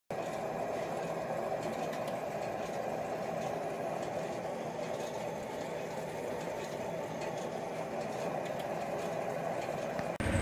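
Fuel pump dispensing into a pickup truck's tank: a steady, even whirring rush of fuel flowing through the nozzle.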